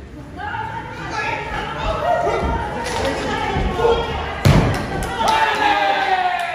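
Heavy thud of a wrestler's body slammed onto the ring canvas about four and a half seconds in, after a couple of lighter thumps, with people shouting over it.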